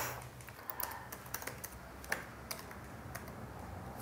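Laptop keyboard keys tapped in an irregular run of light clicks as a password is typed.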